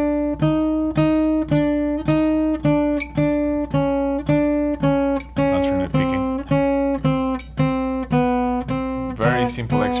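Acoustic guitar played fingerstyle: single notes of a chromatic exercise picked with alternating index and middle fingers, at an even pace of about two notes a second. The notes step gradually lower in pitch.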